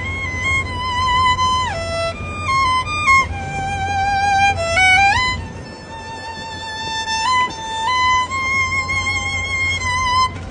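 Solo violin playing a slow melody of long held notes, sliding up from one note to the next about five seconds in.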